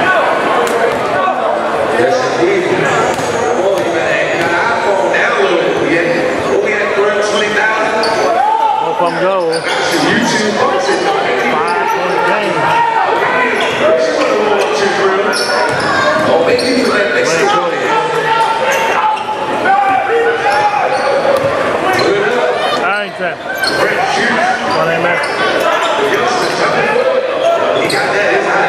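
Basketball game in a gymnasium: a ball bouncing on the hardwood floor, with the voices of players and spectators echoing through the hall.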